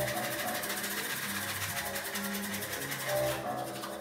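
Free-improvised music from a saxophone, piano and drums trio with live sampling: low held tones under a rapid, even fluttering pulse that stops near the end.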